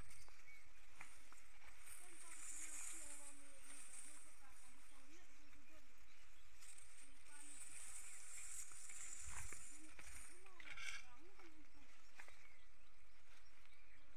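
Faint, distant voices talking over a quiet open-air background. A soft high hiss comes and goes twice.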